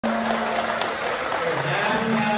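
A man singing into a microphone over a PA system in a large, reverberant hall: one long held note, then lower notes near the end.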